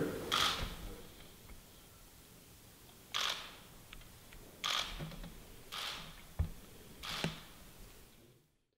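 Camera shutter clicks: four single shots spaced one to one and a half seconds apart, with a soft knock between the last two.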